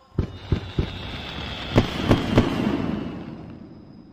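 Fireworks going off: three sharp bangs in the first second, then three louder ones about a second later, over a crackling hiss that slowly fades.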